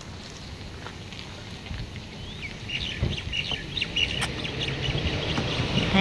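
Birds chirping in a rapid run of short, high notes, starting about two and a half seconds in, over low background noise that grows louder toward the end.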